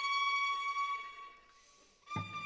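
Contemporary string quartet music: a violin holds one high bowed note that fades away over the second half.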